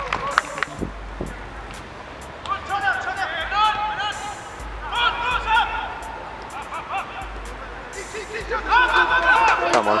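Football players shouting across the pitch, with a few sharp knocks in between; a call of "come on" begins right at the end.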